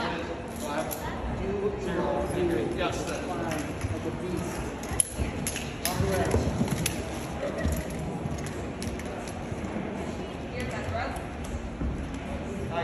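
Indistinct voices talking throughout, with scattered sharp clicks and knocks; one knock about five seconds in is the loudest sound.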